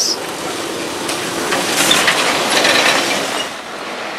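Heavy container truck passing close by on a wet road, its tyres and trailer making a loud, noisy rumble that builds to its loudest about two to three seconds in and then eases as it goes by.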